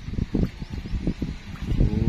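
Hooked tilapia thrashing and splashing at the water's surface as it is pulled out on the line, with wind buffeting the microphone.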